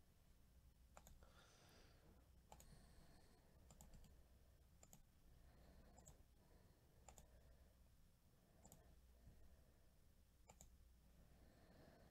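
Faint computer mouse clicks, about eight single clicks spaced one to two seconds apart, over a low room hum.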